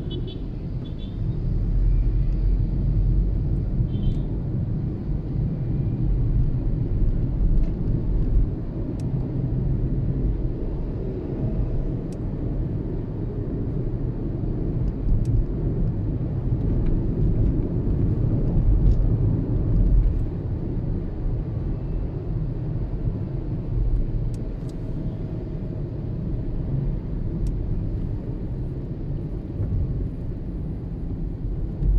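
Steady low rumble of a car's engine and tyres heard from inside the cabin while driving through city traffic, swelling and easing a little with the car's speed.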